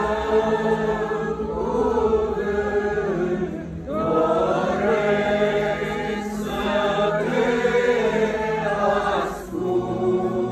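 A congregation singing an Orthodox church chant together in long, sustained phrases, with short breaks between phrases about four seconds in and near the end. A steady low tone is held underneath.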